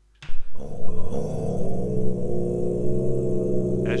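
A sampled low Tibetan chant played back from Reason's NN-XT sampler, with the time-stretched and original versions of the sample sounding together. It is a deep, steady drone of layered voices with a grainy, stepping texture from the time-stretching, and it comes in a fraction of a second in.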